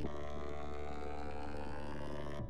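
Synthesized sorting-algorithm sonification from ArrayVisualizer running a Radix LSD in-place sort (base 10): a dense, steady cluster of electronic tones, many pitches sounding together, each tone voicing an access to the array as it is sorted.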